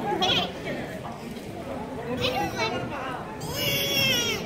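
A squeaky, high-pitched voice calls out "baby!" and then makes two short baby-like cries, the last one longer and the loudest, near the end, over people talking.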